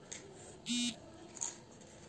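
A short electronic buzz, the loudest sound, comes just under a second in. It is set among faint crisp clicks of fingers cracking open a puffed puchka (panipuri) shell.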